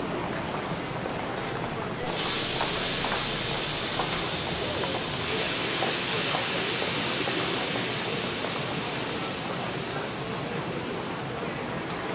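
SBB Roter Pfeil electric railcar venting compressed air: a few short knocks, then a sudden loud hiss about two seconds in that fades slowly over the following seconds into steady station noise.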